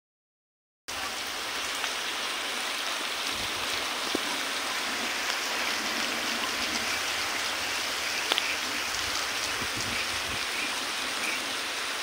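Rain falling steadily onto standing floodwater and wet grass: a constant hiss that starts about a second in, with the occasional faint tick of a drop.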